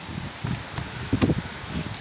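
Outdoor wind noise: an uneven hiss with a few low gusts buffeting the phone's microphone.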